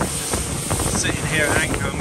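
Motor boat under way: a steady engine rumble and water rushing past the hull, with wind buffeting the microphone and a few short knocks.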